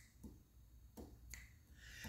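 Near silence in a pause between sung lines, with a few faint, sharp clicks and a soft intake of breath near the end.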